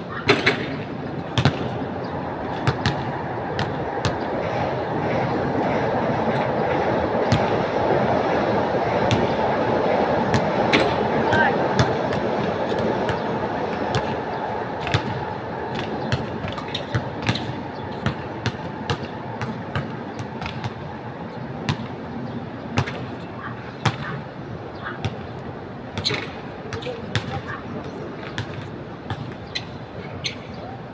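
Basketballs bouncing on a hard outdoor court, with irregular sharp knocks from balls striking the rim and backboard, over a steady background of indistinct voices.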